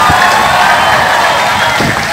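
Large crowd of demonstrators cheering and shouting, loud and sustained, easing slightly near the end.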